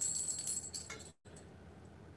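Silver dollar coins (Morgan and Peace dollars) hanging on cords clinking against each other as a hand lifts them: a high ringing clink at the start that dies away, and one faint clink about a second in.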